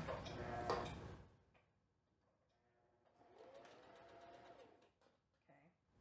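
Electric sewing machine running briefly to stitch a short seam a little way down the edge of two fabric squares. It comes in about three seconds in as a faint hum that rises and then falls in pitch as the machine speeds up and slows down, and it lasts about a second and a half.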